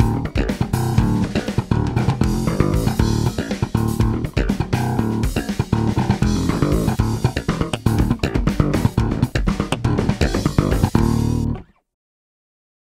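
Spector Performer five-string electric bass played with the fingers, a busy line of quick notes, cutting off abruptly near the end.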